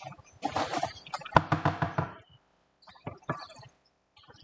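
Wooden spoon knocking and scraping against a stone-coated frying pan while stirring a thick adobo sauce, a quick run of knocks with one sharp strike about a second and a half in. Near the end, two more knocks as the spoon is set down across the pan.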